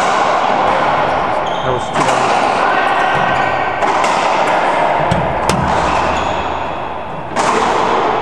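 Racquetball doubles rally: the hollow rubber ball cracking off racquets and the court walls, hard hits about two, four and seven seconds in, each ringing on in the court's heavy echo.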